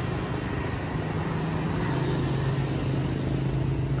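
Street traffic: motorbike and car engines running on the road, with a steady low engine hum that grows louder from about a second and a half in.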